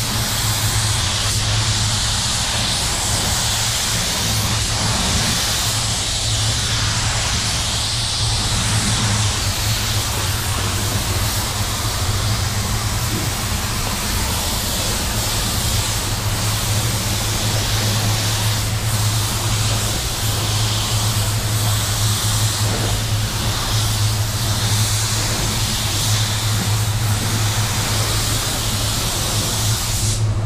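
Walcom Carbonio Evo gravity-feed spray gun with a 1.2 tip, fed at 30 psi, hissing steadily as it sprays a coat of paint in passes, the hiss swelling and easing slightly as it goes. A steady low hum sits underneath.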